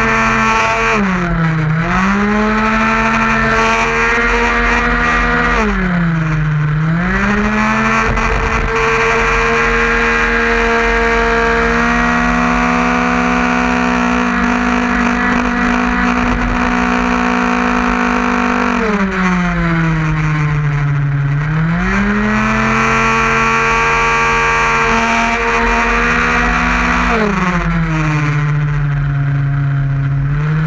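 Tuned 50cc two-stroke racing scooter engine (Metrakit) held at high revs, heard from a camera on the scooter's tail. Its pitch dips and climbs back four times as the throttle eases for corners (about a second in, around six seconds, about twenty seconds in, and near the end), and it holds steady along the straight in between.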